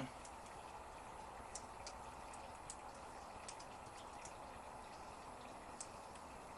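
Quiet background hiss with a few faint, scattered light clicks of a small metal clip and weld-on tab being handled and fitted.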